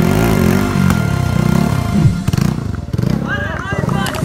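A motorcycle engine revving up and down as the rider throws the bike through stunts and into a wheelie, over crowd voices and music.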